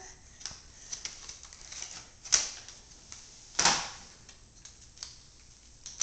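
Scattered light clicks and taps, with two louder knocks or rattles about two and three and a half seconds in: a baby handling a small box and a set of keys on a tile floor.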